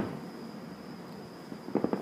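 Distant fireworks: a sharp pop at the very start and a quick cluster of pops near the end, over a faint steady background with a thin high tone.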